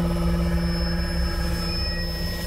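Superpower sonic-pulse sound effect: a steady, sustained hum with a stack of overtones over a low rumble.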